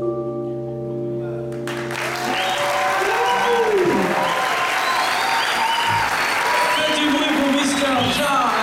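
A live band's last held chord rings out. About two seconds in, the audience starts applauding and cheering, with whoops and shouts.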